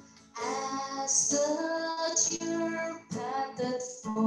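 A woman singing a slow worship song into a microphone, holding long notes that begin about a third of a second in, with a short breath break near the end.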